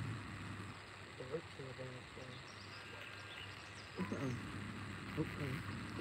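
Faint, distant voices over a quiet outdoor background hiss: a few words about a second in and again about four seconds in.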